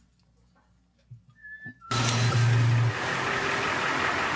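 Faint room tone, a brief high whistle-like tone, then the soundtrack of a played video clip cutting in suddenly about two seconds in. The clip's sound is a loud, steady car-interior rush of engine and road noise, with a low hum that is strongest for about its first second.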